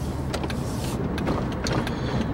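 Car cabin noise while driving: a steady low engine and road rumble with a light hiss, and a few short clicks.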